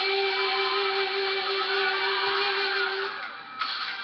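A singing voice holds one long, steady note, ending a little after three seconds in. Underneath it is loud, harsh, distorted backing music picked up by a webcam microphone.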